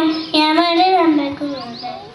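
A young child singing into a microphone in long, drawn-out notes that fade out about a second and a half in.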